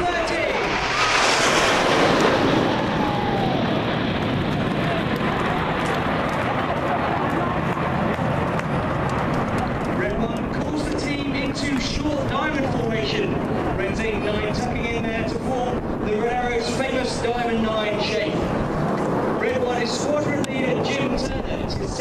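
Red Arrows' BAE Hawk T1 jets, nine in formation, passing over: a loud jet rush that peaks a second or two in, its hiss then falling away into steady engine noise, with voices over it from about ten seconds on.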